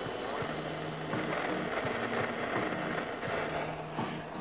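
Handheld butane blowtorch burning with a steady hiss as its flame plays on charcoal in a chimney starter, a little louder from about a second in. Low steady tones that step in pitch run underneath.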